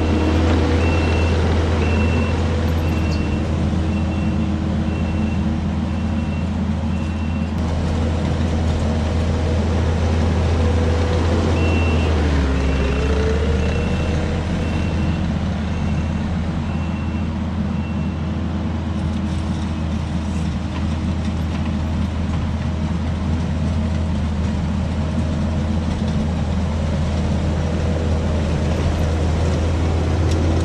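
Kubota SVL75 compact track loader's diesel engine running steadily under load while it drags a grading attachment over loose gravel. A backup alarm beeps about once a second in two runs over the first two-thirds, and the engine's pitch dips and recovers briefly partway through.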